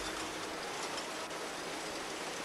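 Steady, even hiss-like background noise with no distinct clicks, rhythm or tones.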